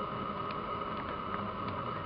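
A pause in speech filled by a steady background hum with a constant high note, and a few faint ticks.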